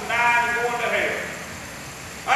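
A man preaching: one drawn-out phrase with a strained, wavering pitch that trails off about a second in, followed by a short pause.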